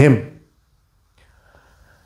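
A man's spoken word trailing off, then a pause in which only a faint intake of breath is heard near the end, before he speaks again.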